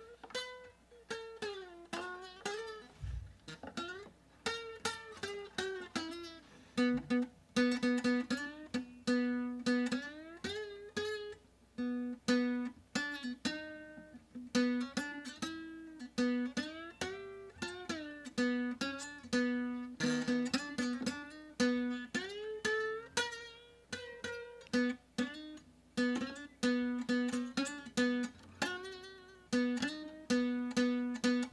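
Nylon-string acoustic guitar with a broken bridge, picked note by note with a plectrum in a steady run of single notes. Many notes slide and waver in pitch, and one low note is struck over and over. Only the bottom string works well enough to play.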